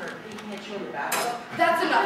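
A brief clatter about a second in, followed by speech.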